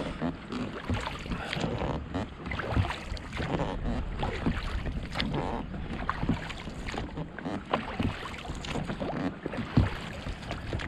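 Oars rowing an inflatable dinghy: irregular splashes of the blades and knocks of the oars in their locks over a steady hiss of water and light wind, with one louder knock near the end.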